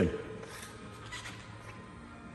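A man's word trailing off at the very start, then quiet indoor room tone with a few faint soft rustles and taps.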